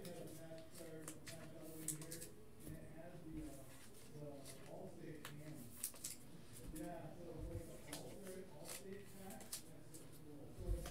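Quiet handling of trading cards and their packaging: a scatter of small clicks and rustles, over faint voices in the background.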